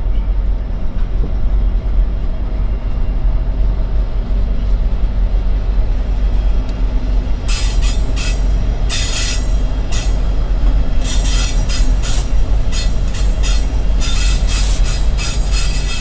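CSX SD70 diesel locomotive passing close by, its engine giving a steady, heavy low rumble. From about halfway in, repeated bursts of high, hissing wheel-on-rail noise come on top as the trucks roll by.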